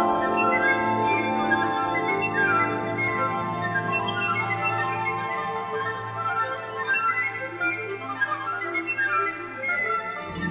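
Classical orchestral music: quick runs of flute-like notes rising and falling over a steady held low note.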